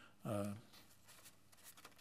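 Speech: a man's drawn-out hesitation 'uh', then a pause of faint room tone.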